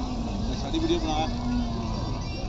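Faint background voices of people over a steady low rumble.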